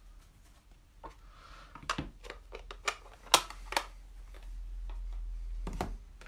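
Sharp clicks and taps of a clear acrylic stamp block and stamp being handled and set down on a craft mat, about eight in a few seconds. A steady low rumble follows for about a second near the end.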